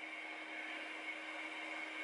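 Faint, steady hiss of room tone with a low, even hum running under it; no distinct event.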